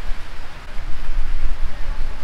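Steady rain falling, with an uneven low rumble underneath.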